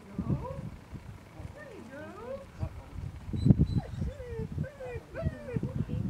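Dog whining and yipping over and over, short calls that rise and fall in pitch, with scuffling thuds and a loud thump about halfway through.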